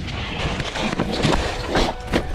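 Mountain bike tyres skidding and sliding over wet dirt and dead leaves, with the bike rattling, as the rider carries too much speed on the wet trail and slides off it.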